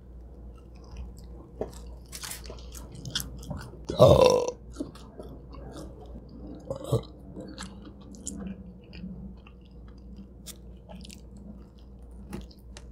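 Close-miked biting and chewing of a cheesy pizza slice, with scattered small wet mouth clicks and crackles. There is one brief, loud throaty sound about four seconds in.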